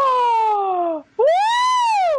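Two long, drawn-out vocal "ooh" exclamations, a mock groan at a pun. The first slides down in pitch. After a brief pause, the second rises and then falls.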